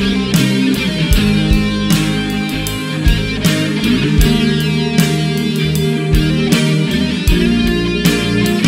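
Rock music: electric guitar over bass and a steady drum beat, in an instrumental passage with no singing.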